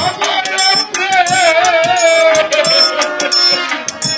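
A Bengali devotional song performed live: a voice holds one long wavering note over busy hand percussion with rattles and drums.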